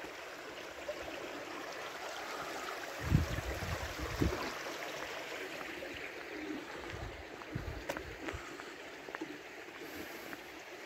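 Steady rush of running water, with a few soft low thumps about three and four seconds in and again around eight seconds.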